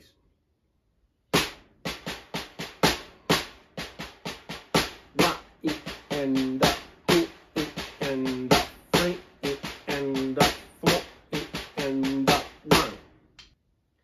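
A six-stroke roll played with drumsticks on a snare drum, led with the left hand, at an even pace of roughly four to five strokes a second. It starts about a second in. In the second half, pairs of accented strokes ring out with the drum's tone above the softer doubles, and it stops shortly before the end.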